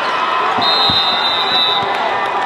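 Crowd noise in a basketball arena, with a ball bouncing on the hardwood a few times and one long, high whistle blast starting about half a second in and lasting just over a second.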